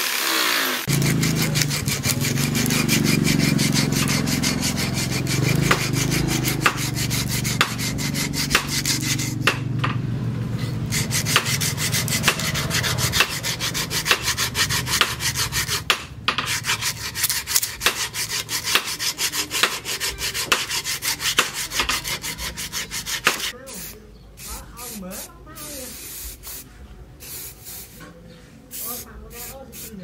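Wooden axe handle being sanded by hand: rapid, regular back-and-forth rubbing strokes of abrasive on wood, becoming sparser and quieter for the last several seconds. An angle grinder on the steel axe head is heard only in the first moment.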